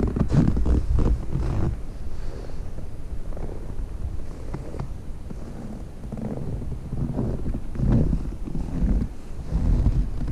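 Wind buffeting the microphone in gusts, a low rumble that is strongest in the first couple of seconds, dies down, and rises again near the end.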